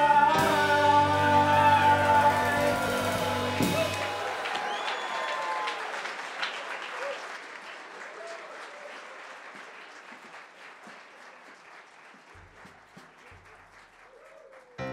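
A live band and singers end a song on a held final chord that cuts off about four seconds in. Audience applause follows and fades away over the next several seconds.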